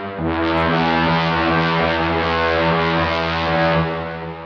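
Distorted Sylenth1 synth horn, a buzzy brass-like lead, holding one low note almost to the end, after a brief dip at the start.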